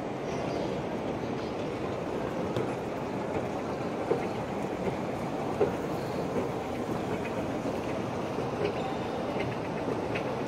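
Steady mechanical rumble of an escalator running while riding it down, with a couple of light clicks from the moving steps, over the general hum of a large terminal hall.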